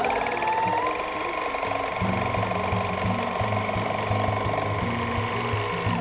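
TSM M-434D portable four-thread overlock machine (serger) running at sewing speed, stitching an overlock seam along a fabric edge. Its motor whine rises in pitch over the first second as it comes up to speed and then holds steady, with a fast even mechanical rattle from the needles and loopers.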